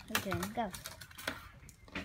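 A voice says "go", then a handful of separate light clicks and taps follow over the next second and a half.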